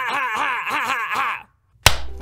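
A man laughing hard, a string of pulsing voiced 'ha's about five a second, that stops abruptly about one and a half seconds in. After a moment of silence, a single sharp click near the end.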